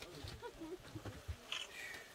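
Low murmur of voices with a few dull knocks in the first second and a half, from coal briquettes being handed along a line of people.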